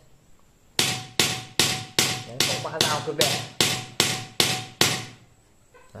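A smith's hand hammer striking metal on a block, about eleven even blows at roughly two and a half a second, each ringing briefly. The blows start just under a second in and stop about five seconds in.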